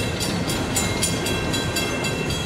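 Loaded coal hopper cars rolling slowly past with a steady rumble of wheels on the rails. Over it a grade-crossing bell rings in rapid, even strikes.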